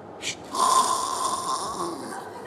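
A woman's exaggerated comic snore: a short hissing breath, then one long drawn-out snore with a steady whistle in it that fades near the end.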